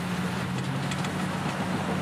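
An engine running steadily, a low even hum with a hiss over it.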